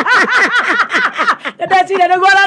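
A woman laughing in a quick, high-pitched run of 'ha' pulses, about six a second, that gives way to a longer drawn-out voice sound near the end.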